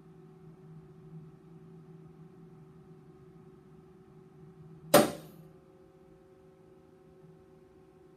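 A tensile test specimen fracturing in an Instron universal testing machine: one loud, sharp snap about five seconds in, with a brief ring afterward, over a steady low hum.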